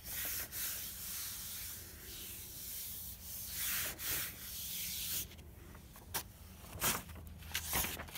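A hand rubbing a sheet of paper pressed onto a paint-covered homemade gelli plate to pull a ghost print: a steady swishing of palm over paper that eases off after about five seconds. A few short paper crackles near the end as the print is lifted.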